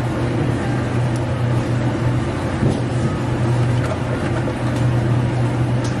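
Steady low machine hum with an even hiss from running café equipment. Faint soft scrapes come from a spatula spooning thick mango smoothie out of a blender jar into a cup.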